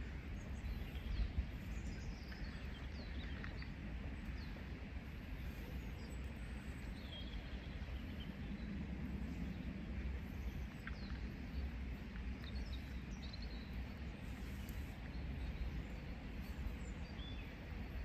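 Outdoor ambience: scattered short bird chirps over a low steady rumble.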